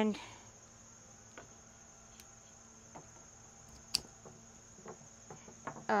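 Crickets chirring steadily at a high pitch, with faint ticks of branch handling and one sharp click about four seconds in.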